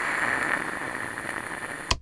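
Static-like hiss from an electronic sound effect, steady and easing off slightly, cut off by a sharp click near the end.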